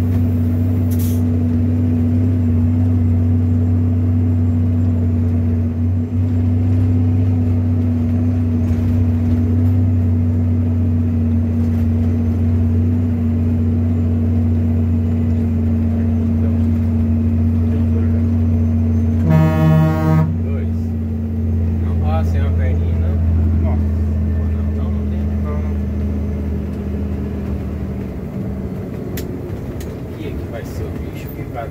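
Scania truck's diesel engine running steadily under way, heard from inside the cab, with one horn toot about a second long roughly two-thirds of the way through. Near the end the engine eases off and gets quieter as the truck slows.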